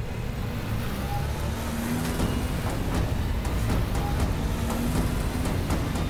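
A car driving, its engine and road noise a steady low rumble, with background music playing over it.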